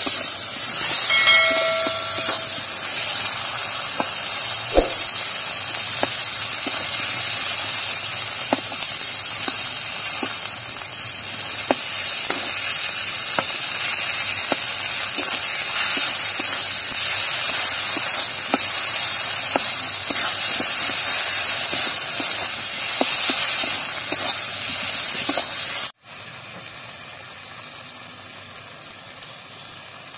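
Tomatoes, onion and spices frying in hot oil in an iron kadai: a loud steady sizzle, with the metal spatula scraping and tapping the pan. The loud sizzle cuts off abruptly near the end, leaving a quieter one.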